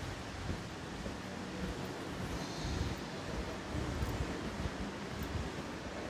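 Faint, steady background hiss of a large open hotel atrium, with no distinct event standing out.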